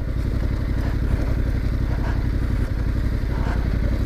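Yamaha Ténéré adventure motorcycle's engine running at low, steady revs as it is ridden slowly along a rough dirt track.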